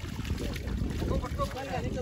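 Pond water sloshing and splashing as people wade knee-deep and a man stirs the water with his hands. Voices come in about a second in, and wind buffets the microphone.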